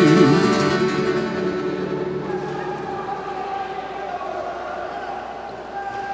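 Live guitar-backed gaúcho folk music ending: the last chord rings out and fades over the first couple of seconds, leaving quieter sustained tones.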